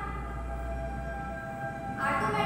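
A long, steady horn blast with several pitches sounding together, breaking off just before the end as a second blast begins.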